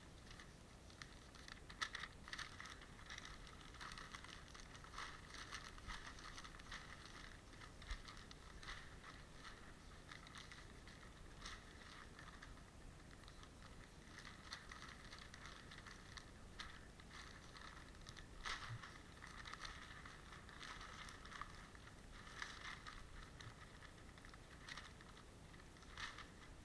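Faint rustling and crinkling of newspaper being handled and rubbed over the flesh side of a skinned muskrat pelt to wipe off fat, with small irregular crackles throughout.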